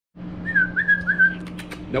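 A short whistle of four quick notes at about the same pitch, each with a small slide, followed by a few light clicks, over a steady low hum.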